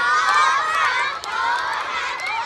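A crowd of young schoolchildren shouting and cheering at once, many high voices overlapping, with a brief lull a little over a second in.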